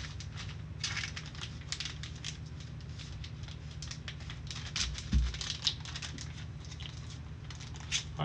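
Clear plastic card sleeve and holder crinkling and crackling in short bursts as a trading card is slipped in and handled with gloved hands, over a low steady hum. A soft thump comes a little after five seconds.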